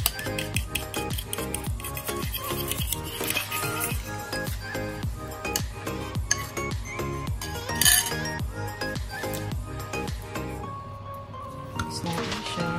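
Background music with a steady beat, over a metal spoon clinking and scraping against a bowl as vegetable batter is mixed. There is one louder clink about eight seconds in.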